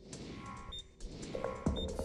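Suspense music for a countdown timer, with a short high electronic blip twice, about a second apart.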